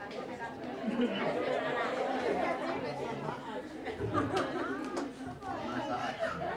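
Several people in a congregation talking over one another, with a woman laughing.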